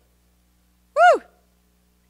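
A woman's single short 'woo!' whoop about a second in, its pitch rising and then falling. It is a joyful noise of praise.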